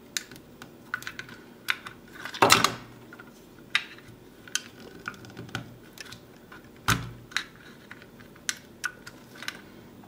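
Metal screwdriver tip prying and picking at thermal glue inside a smart plug's plastic housing: irregular small clicks and taps, with louder knocks about two and a half seconds in and again around seven seconds.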